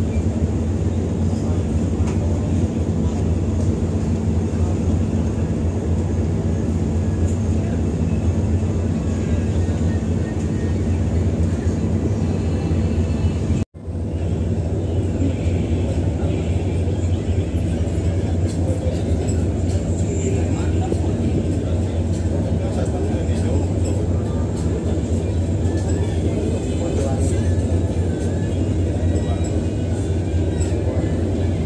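Steady low drone of a large passenger ship's engines heard out on deck, with wind and sea noise over it. The sound breaks off for an instant about 14 seconds in and goes on unchanged.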